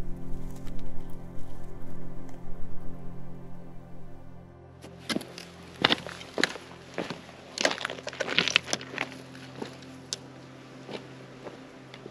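Soft ambient instrumental music for the first four seconds or so. Then the music drops low and a hiker's footsteps crunch on a stony trail, uneven steps about one or two a second.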